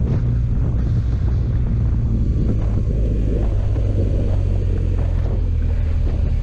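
Motorcycle engine running at a steady cruise, with wind noise on the microphone.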